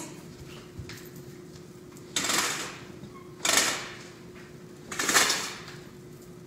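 Curtains being drawn shut: three rough sliding swishes, about a second and a half apart.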